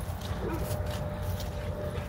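A dog whining faintly, a thin steady note held for over a second, over a steady low rumble of wind and handling noise on the phone microphone.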